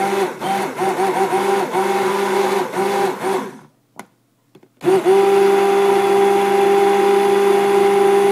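Stick blender running in a crock of liquid-soap mixture being blended toward soap paste, its motor tone wavering with short dips. It cuts off about three and a half seconds in, then starts again about a second later and runs steadily.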